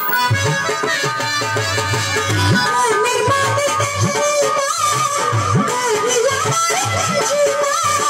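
Live Bengali folk music. An electronic keyboard plays a wavering, ornamented melody over a steady beat on a rope-laced two-headed barrel drum, some of its low strokes sliding up in pitch.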